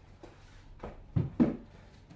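Books being handled and set down on a bookshelf: two thumps about a second in, a quarter second apart.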